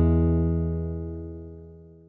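The final chord of an acoustic guitar ringing out and fading steadily away, dying out near the end.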